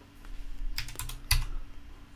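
Computer keyboard: a few quick keystrokes about a second in, typing in an extrusion height value of 20 in AutoCAD.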